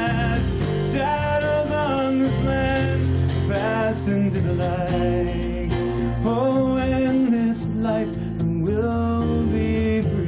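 Live acoustic folk music: a singing voice holding long notes that bend and sway, over strummed acoustic guitar.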